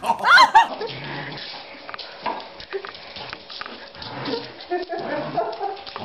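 A short, loud, sliding high cry in the first moment, then a dog's play noises (growls and yips) with scuffling for the rest.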